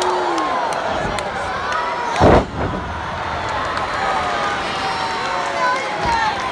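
Arena crowd cheering and shouting, with one loud thud about two seconds in as a wrestler's body is slammed onto the wrestling ring's canvas.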